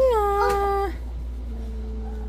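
A toddler's whiny cry: one drawn-out vocal wail that rises at the start and then holds level, lasting just under a second.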